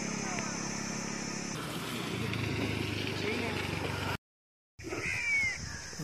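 Outdoor field ambience: a steady high insect drone with a few faint chirps, broken by a half-second cut to silence about four seconds in.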